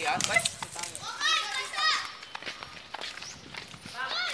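Young people's voices calling out and chattering, with two loud, high-pitched shouts about a second in.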